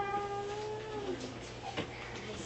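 A woman's drawn-out thinking "ummm", held on one steady pitch for about a second before it trails off, with a faint click near the end.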